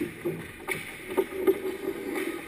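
Hockey skate blades scraping and carving on the ice around the goal, with several sharp clacks of sticks and puck, the loudest about a second and a half in.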